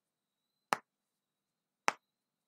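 Two sharp clicks of a computer mouse button, about a second apart.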